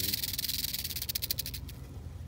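Rattlesnake buzzing its tail rattle as a defensive warning. The fast, dry buzz fades and stops shortly before the end.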